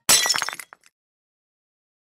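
A small brittle object hitting a hard floor and shattering, followed by a quick run of clinking pieces over about half a second.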